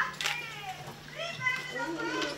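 High-pitched voices, as of children, talking and calling amid a crowd, with no clear words, over a steady low hum.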